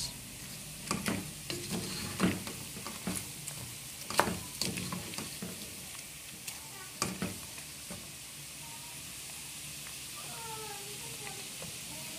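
Cubes of pork fatback sizzling steadily as they fry into crackling in a metal pot, with a wooden spoon stirring and knocking against the pot several times in the first seven seconds. The fat is rendering calmly, without popping or spattering.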